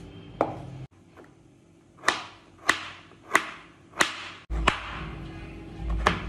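Kitchen knife chopping pieces of fresh coconut on a wooden cutting board: a run of sharp strokes about two-thirds of a second apart.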